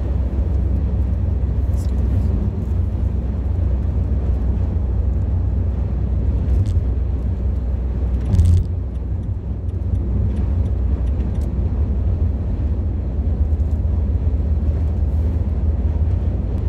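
Road noise inside a car cruising on a motorway: a steady low rumble of tyres and engine, with a brief louder bump about halfway through.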